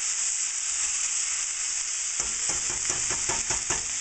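Shrimp fried rice sizzling steadily in a hot wok. From about halfway in, it is stirred quickly, with a rapid run of scrapes and knocks against the wok. The rice is sticking, so it is kept moving to brown it without letting it crisp.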